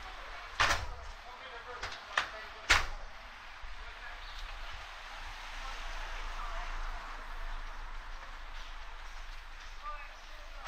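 Four sharp bangs in the first three seconds, the last the loudest, over a steady street hubbub with distant voices.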